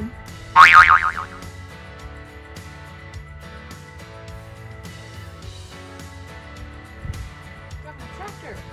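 Background music with a steady beat, with one short, loud pitched sound about half a second in.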